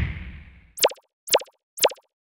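Sound effects for an on-screen graphic: a whoosh dies away, then three short plop sounds about half a second apart. The plops go with three "+1" labels popping up on screen one after another.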